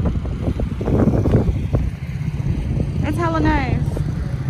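Steady low outdoor rumble, with a person's high voice sounding briefly and falling in pitch near the end.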